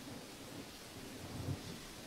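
Faint, steady background hiss with a low rumble underneath, in a pause between lines of dialogue.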